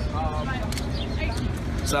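City street background noise: a low rumble of traffic under faint talk, with a few short clicks.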